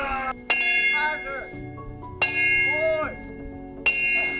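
A sledgehammer strikes a steel disc on the end of a long steel pipe three times. Each blow leaves the metal ringing on with a clear bell-like tone.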